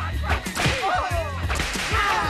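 Sound effects from a film fight scene: several quick whip-like swishes and strikes in a row.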